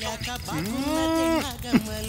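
A long drawn-out call that rises, holds one steady pitch for about a second, then drops off.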